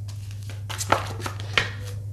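Tarot cards being handled: a few short rustles and clicks over a steady low hum.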